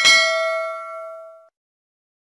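Notification-bell 'ding' sound effect of a subscribe-button animation as the bell icon is clicked: one bright chime with several ringing overtones, fading and cut off about a second and a half in.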